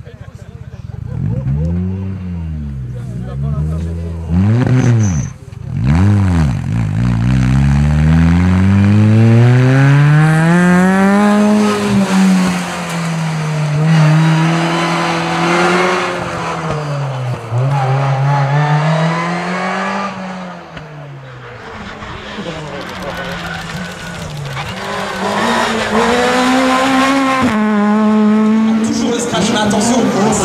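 Ford Fiesta rally car's engine driven hard on a tarmac stage: the revs climb in long rising sweeps, drop suddenly at each gear change, and fall and rise again under braking into corners, with some tyre noise.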